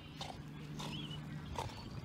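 Small long-haired dog making a faint, low, steady growl for about a second and a half as it watches another dog swim, then falling quiet.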